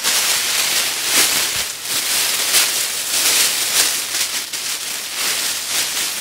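Thin PrimaCare mylar survival blanket crinkling and rustling loudly as it is unfolded and shaken out, a dense, irregular crackle of foil sheet throughout.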